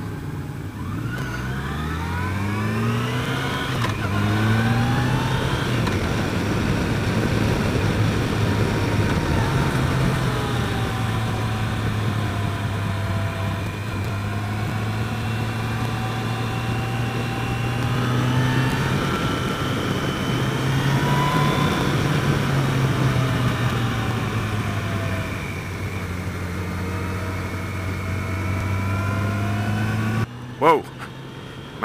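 Yamaha FJR1300's inline-four engine under way on a winding road. The revs climb in the first few seconds, then hold fairly steady with gentle rises and falls through the curves, over a steady rush of wind.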